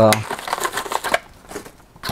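Cardboard box and paper packaging rustling and crinkling as a fan's retail box is opened by hand, for about a second, then dying down.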